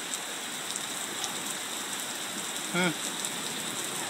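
Steady rain falling in a thunderstorm, an even hiss on the wet deck and railings.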